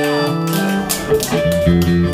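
Electric guitar and bass guitar playing held notes through stage amps, with a low bass line coming in about one and a half seconds in.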